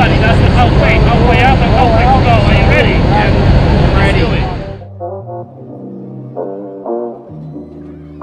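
Loud, steady roar of a jump plane's cabin in flight, with voices shouting over it; the roar cuts off suddenly about five seconds in, leaving background music with brass.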